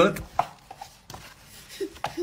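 A few light taps and knocks, the sharpest a little under half a second in, followed near the end by a brief babble from a baby.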